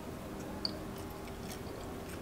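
Faint chewing of a piece of kelp jerky, with a few small clicks of the mouth, over a low steady room hum.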